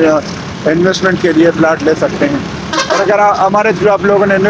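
A man talking, with a steady hum of traffic and engines underneath.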